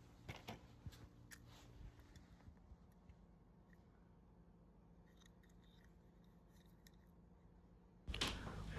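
Near silence, with a few faint clicks and taps in the first two seconds or so as a small die-cast toy car is picked up and handled.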